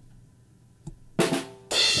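A short drum-kit sting sound effect fired from a podcast soundboard pad. It comes in two loud hits a little over a second in, and the second rings on like a cymbal.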